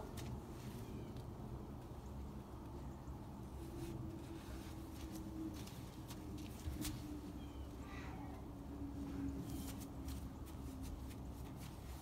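Quiet snow being scooped and packed by hand off a car's hood and roof: faint scattered scrapes and crunches over a low steady hum.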